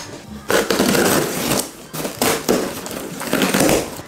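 Cardboard shipping box being torn open: cardboard and tape ripping and crackling in several loud, noisy bursts.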